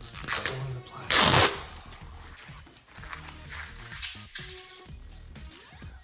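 Protective plastic film being peeled off a steel rack upright: a loud ripping rasp about a second in, with softer crackling around it, over background music.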